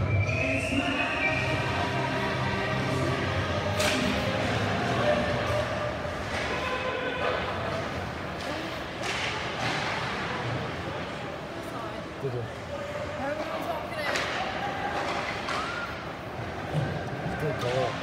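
Ice hockey game in a rink: sharp knocks of sticks and puck against the ice and boards every few seconds, over a steady arena background with spectators' voices.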